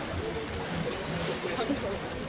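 Indistinct shouting and chatter from water polo players and spectators, with a steady background hiss.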